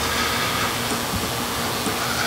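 A steady hiss of noise, spread evenly from low to high pitches, holding at a constant level for about two and a half seconds.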